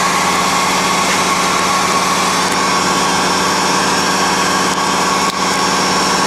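Steinel electric heat gun running steadily, its fan blowing with a constant even whine.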